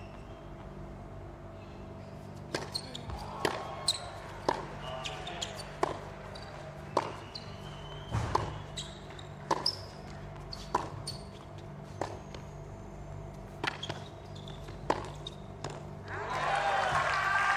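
Tennis serve and baseline rally on a hard court: sharp pops of racket strings hitting the ball and the ball bouncing, about one a second, starting a couple of seconds in and ending near the end.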